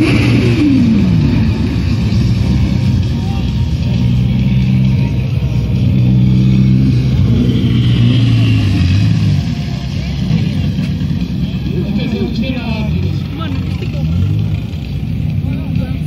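Car engine at a wet runway drag race. It runs with a steady low drone for about nine seconds, then drops away, with quicker rises and falls in engine pitch toward the end. Crowd voices are mixed in.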